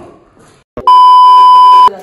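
A single loud, steady bleep tone about a second long, of the kind dubbed in during video editing, cut off sharply at the end. A short click comes just before it.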